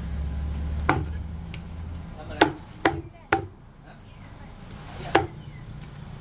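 Meat cleaver chopping raw chicken on a thick round wooden chopping block: five sharp strikes, three of them in quick succession in the middle.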